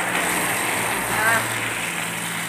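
Garden hose running: a steady hiss of water spraying onto soil and plants, with a steady low hum underneath.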